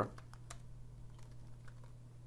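Typing on a computer keyboard: a few faint, scattered key clicks, the clearest about half a second in, over a steady low hum.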